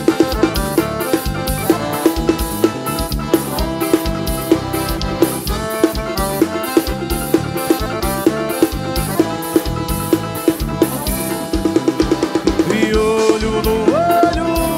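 Live forró band playing an instrumental passage: an accordion-led melody over a steady drum-kit beat with bass drum and snare.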